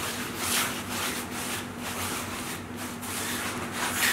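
A painting tool rubbing across the painting surface in repeated scratchy strokes at an uneven pace. A steady low hum runs underneath.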